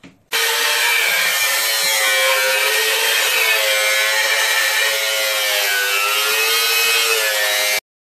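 Angle grinder with a cut-off disc cutting through a high-speed-steel machine hacksaw blade. It is a loud, steady grinding with a whine that wavers slightly in pitch, and it starts and stops abruptly.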